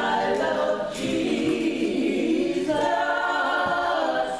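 A small group of women singing a gospel hymn together, unaccompanied, holding long notes that change pitch about a second in and again near the end.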